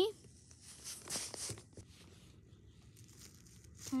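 Soft rustling and crackling of snow and dry leaves as a plastic toy dog figure is moved about on them, loudest about a second in, then faint.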